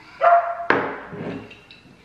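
A woman's vocal reaction to swallowing a shot of straight vodka: a short high-pitched whimper, then a sudden sharp exhale that trails off into a low groan.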